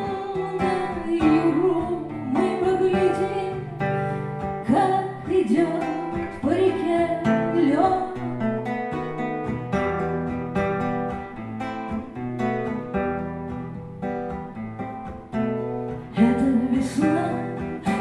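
A woman singing a slow ballad to her own fingerpicked acoustic guitar, the voice holding long notes in the first half. The guitar then carries on alone as an instrumental passage until the singing returns near the end.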